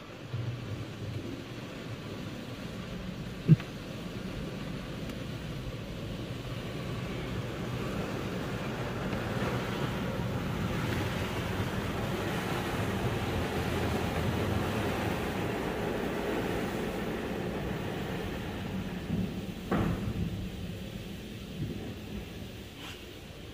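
Automatic car-wash machinery working over the car, heard from inside the cabin: a steady rumbling wash of water and machine noise that builds up in the middle and eases off again. There is a sharp knock about three and a half seconds in and a couple of knocks near the end.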